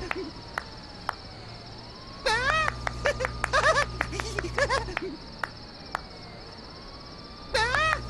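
Crickets chirping steadily through a night scene. About two seconds in, a low electric hum switches on with a neon sign lighting up, while a cartoon boy giggles in a rapid high "hehehe" and claps his hands. All three cut off together near the five-second mark, leaving the crickets.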